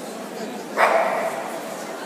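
A dog barks once, loud and short, a little under a second in, over background crowd chatter in a large hall.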